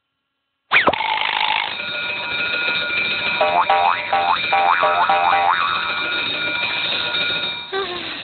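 Cartoon alarm clock going off: a sudden start with a quick falling sweep, then a steady high ringing for about six seconds, with a run of about six short rising chirps in the middle, cutting off near the end.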